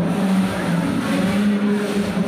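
Large crowd of men chanting together in unison indoors, a steady, loud drone of many voices holding long notes.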